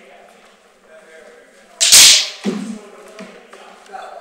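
Swords meeting in a sparring bout: one loud, sharp crack about two seconds in, then a lighter knock.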